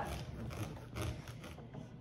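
A knife sawing through the tough stem end of an artichoke on a plastic cutting board: faint, irregular scraping strokes.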